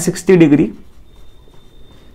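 Marker writing on a whiteboard: faint rubbing strokes after a short spoken word.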